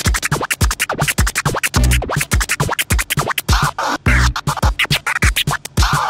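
Turntable scratching on Technics decks through a Pioneer DJ mixer: fast, choppy scratch cuts stutter in and out over heavy bass hits, in a hip-hop turntablism routine.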